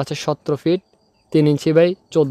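A man speaking: Bengali narration, with a short pause about a second in.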